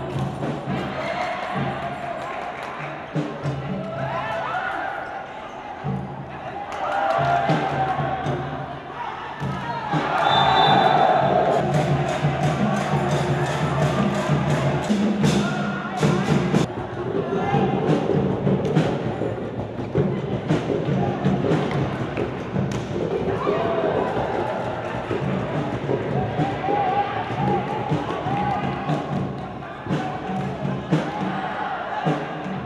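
Indoor volleyball rally: thuds of the ball being struck over a crowd's shouting and cheering and music.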